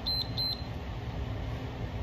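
Two short, high electronic beeps from a Tabata interval timer, about a third of a second apart, marking the start of a work interval. A steady low background rumble runs under them.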